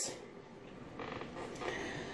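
A faint creak about halfway through.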